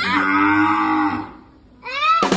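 A calf moos once, a long steady call that lasts a little over a second, with another call starting just at the end.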